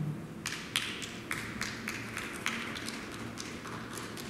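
About ten light, sharp taps and knocks, irregularly spaced, over a low background.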